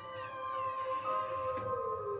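Improvised music: layered held tones with a wordless singing voice that glides down in pitch in the first second, and another held tone coming in about halfway.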